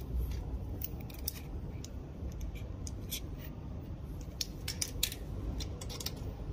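Irregular small, sharp clicks and ticks from hands handling a pipe inspection camera's push-rod cable and stainless steel camera head, over a low steady rumble.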